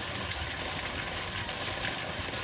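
Steady, even background noise with no voices.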